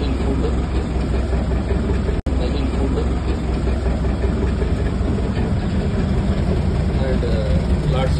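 A houseboat's engine running steadily with a constant low hum, broken by a momentary dropout about two seconds in.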